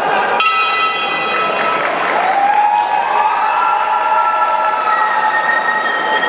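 Boxing ring bell struck once about half a second in, its ringing dying away over about a second, marking the end of the round. Arena crowd noise with shouts and applause goes on around it.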